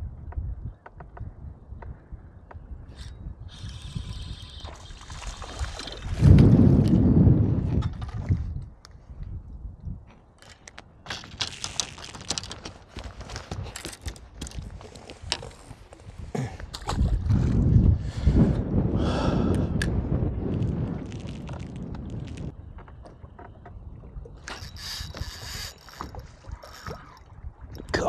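Wind gusting over the microphone in loud low surges, over water lapping at a bass boat's hull, with scattered small clicks in between.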